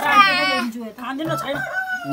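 A rooster crowing, loudest in the first half second, with people talking over it.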